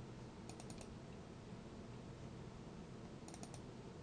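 Computer mouse clicking, two quick bursts of about four clicks each, one near the start and one near the end, over faint steady room hiss.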